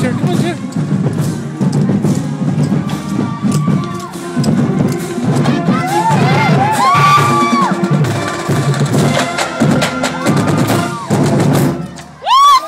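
A marching band's drumline playing as it passes, with bass drums and snare drums striking in a steady, dense rhythm.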